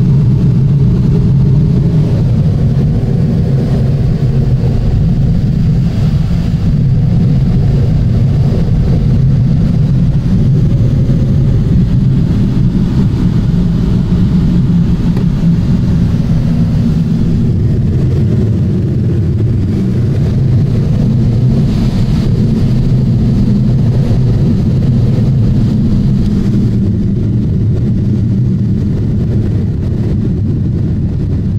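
Steady, deep rush of airflow inside a glider's cockpit in flight.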